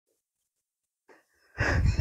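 Near silence for about a second and a half, then a short, breathy intake of breath by a man, with low rumble on the microphone, just before speech.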